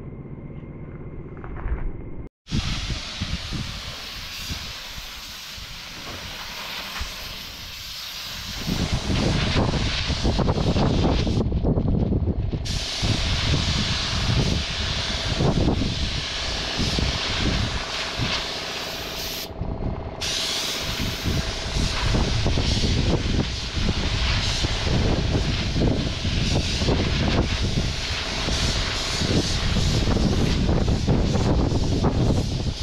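Compressed-air paint spray gun with a paint cup, hissing steadily as it sprays, with a low rumble underneath. The hiss cuts out for about a second twice when the trigger is released, then resumes.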